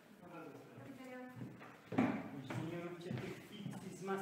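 Indistinct voices talking, with a single sharp knock about two seconds in that is the loudest sound.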